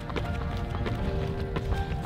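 A runner's shoes striking an asphalt road in a quick, steady rhythm of footfalls, over a low rumble, with background music.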